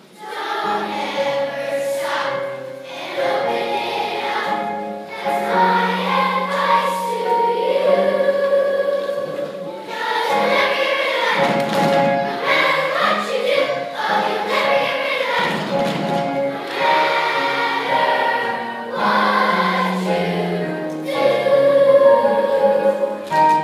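A large children's choir singing a song, voices holding notes that change every second or so.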